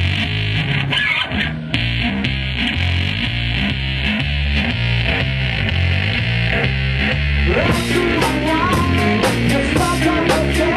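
Live rock band playing loudly: drums and a driving, repeating low guitar line. About eight seconds in, the cymbals hit harder and a higher guitar line comes in.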